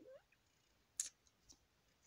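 Near silence, broken about halfway through by one short, sharp click and, shortly after, a much fainter tick.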